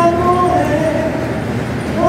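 A woman singing unaccompanied into a microphone. A held note ends about half a second in and a short, softer note follows. Then comes a pause between phrases with only room noise, before the next note starts at the very end.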